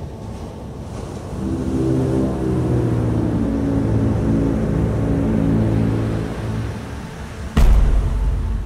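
Film score: a low drone of steady held tones swells in about a second in, then a sudden loud low boom hits near the end.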